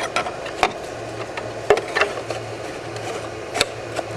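A few sharp clicks and taps as a drilled plastic cutting-board plate and the stacked metal electrode plates of an HHO cell are handled in a plastic box, over a steady low hum.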